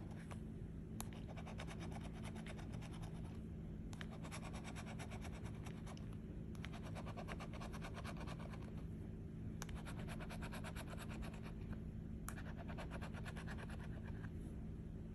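Bottle-opener scratcher scraping the latex coating off a scratch-off lottery ticket in rapid back-and-forth strokes, in runs of a few seconds with short pauses between spots.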